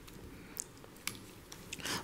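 A few faint, scattered clicks and rustles from papers and a pen being handled at a table microphone, with a short breath near the end.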